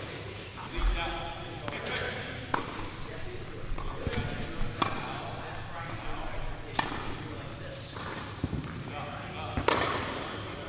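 Tennis rally: a ball struck by rackets and bouncing on an indoor hard court, a sharp hit every couple of seconds, ringing in a large hall.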